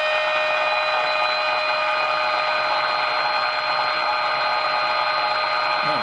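AM radio's speaker playing the signal generator's steady modulation tone, with quite a bit of hiss and static, as the 455 kc IF stages are aligned with the RF gain turned down.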